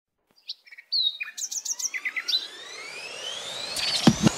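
Birds chirping in quick sweeping tweets, the opening of a song's intro, with a rising tone sweeping up beneath them over the second half.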